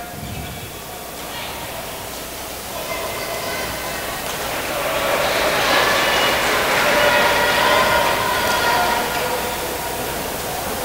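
Background murmur of many voices in a large sports hall, overlapping so that no single speaker stands out, growing louder about halfway through and easing off near the end.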